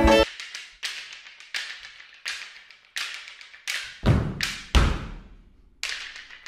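Sparse percussion: single sharp strikes, about one every 0.7 seconds, each with a short ringing decay, with two deeper, heavier hits near the end.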